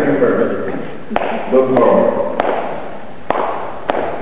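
Four sharp hand claps about a second apart, beating time for a rhythm exercise, with a man's voice speaking between the first ones.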